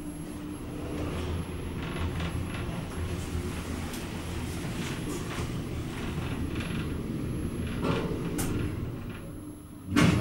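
A 1988 KONE traction elevator car travelling in its shaft, a steady low rumble with light rattles. The level dips near the end and a sudden loud sound follows as the car arrives.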